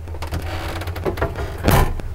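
The hinged cover of a small RV two-burner stove being lowered and shutting with one sharp clack near the end, over a steady low hum.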